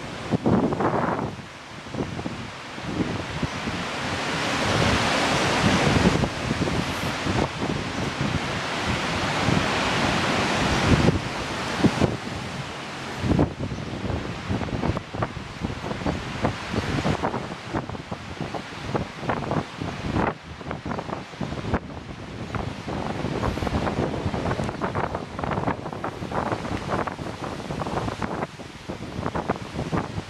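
Wind buffeting the camera microphone on a high balcony, a rushing noise that swells in gusts and flutters in short bursts, with the wash of surf breaking on the beach below underneath it.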